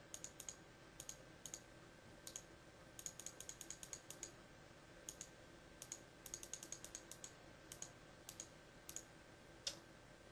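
Faint clicks of a computer mouse, some single and some in quick runs of several clicks.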